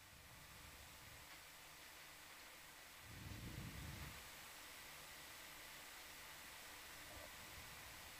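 Near silence: a faint steady hiss from an open communications line, with a brief low rumble about three seconds in.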